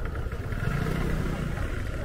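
Low, steady rumble of a motorbike engine moving off along the street, over general street noise.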